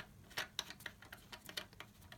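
Reverse-threaded plastic mounting nut of a toilet flush lever being unscrewed by hand inside the ceramic tank: faint, uneven light clicks and ticks, about four or five a second.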